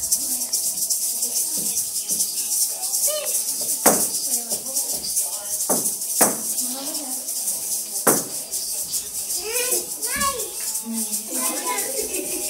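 Several plastic egg shakers rattling continuously along with a recorded children's song, with a few sharp taps standing out.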